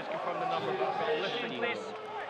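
Men's voices talking, quieter than the commentary around them.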